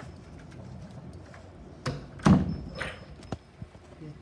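A few short knocks and one heavy thump, the loudest about halfway through, from hard objects knocking or being handled around a phone.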